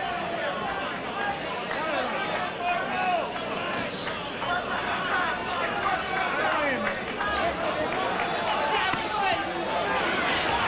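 Boxing arena crowd: many voices talking and shouting over one another in a steady din.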